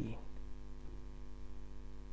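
Steady low electrical hum with a stack of even overtones, unchanging throughout; a man's last word trails off at the very start.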